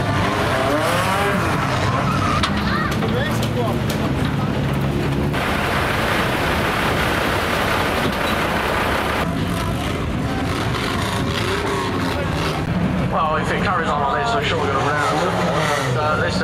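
Banger racing cars' engines revving and labouring on a loose shale track, with rising and falling engine notes and tyres skidding. A few seconds in, the engines give way for about four seconds to a steady rushing noise, then return.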